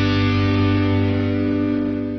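Dramatic score music: a distorted electric guitar chord held steady, starting to fade at the very end.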